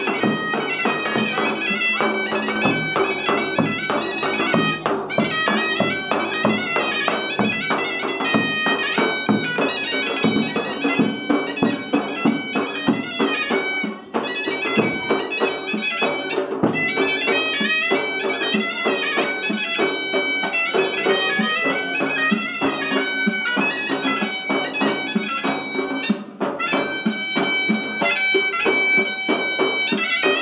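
Zurna playing a shrill, ornamented folk melody over a nağara drum beat, the traditional wedding ensemble.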